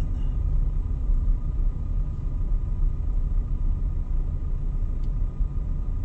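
Steady low rumble of a car heard from inside its cabin as it rolls slowly.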